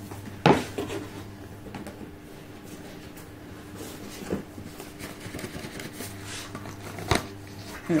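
Cardboard advent calendar box being handled as a large compartment is opened: faint rustling with a few sharp knocks of cardboard, the loudest about half a second in and others near the middle and near the end, over a steady low hum.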